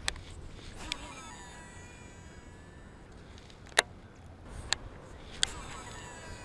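A cast with a Shimano SLX DC baitcasting reel. A faint whine from its digital-control braking system falls in pitch over about two seconds as the spool slows, set among a few sharp clicks of the reel's mechanism. The loudest click comes a little before the four-second mark.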